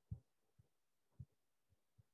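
Near silence broken by a few faint, soft low thuds, about two a second, the first the loudest.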